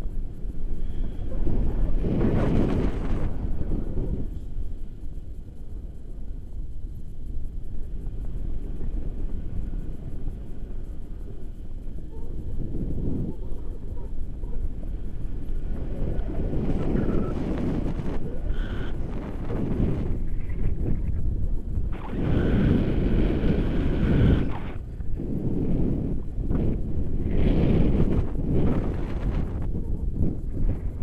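Wind rushing over the microphone of an action camera on a tandem paraglider in flight, swelling and easing in gusts, loudest in the second half.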